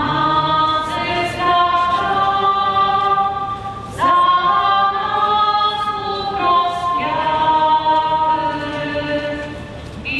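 A group of voices singing a slow hymn unaccompanied, with long held notes; new phrases begin about four and seven seconds in.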